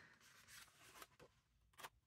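Near silence, with faint rustles and soft ticks of paper as book pages are turned by hand, the loudest near the end.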